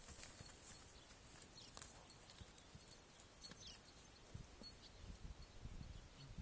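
Faint, soft hoof thuds of a Thoroughbred mare and her foal walking on sand, mostly in the last couple of seconds; otherwise near silence.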